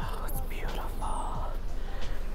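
A woman whispering softly under her breath, unvoiced, with a steady low rumble underneath.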